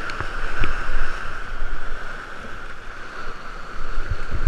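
Rushing whitewater of a big river rapid heard from a kayak, with splashes and low thumps of water against the boat and camera. The rush eases a little in the middle and builds again at the end.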